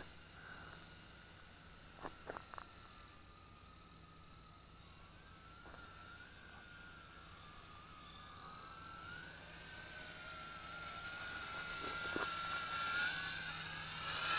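Tarantula X6 quadcopter's small electric motors and propellers whining, their pitch wavering with the throttle. The sound is faint at first and grows steadily louder over the second half as the drone drops and comes closer. A few faint ticks come about two seconds in.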